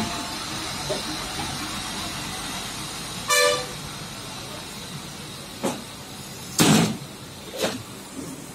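Steady traffic-like background noise with one short vehicle horn honk about three seconds in, followed by three sharp knocks, the loudest just before the end.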